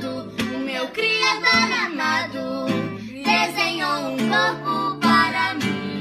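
Young voices singing a song together, accompanied by an acoustic guitar.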